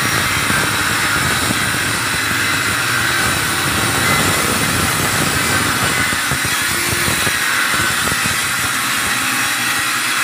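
Handheld electric circular saw running steadily as it is pushed through a long cut in a wood panel, a loud continuous whine of blade and motor without pauses.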